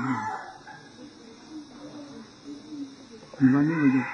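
A rooster crowing behind a man's speech, the crow fading out about half a second in. A quieter pause follows before the speech resumes near the end.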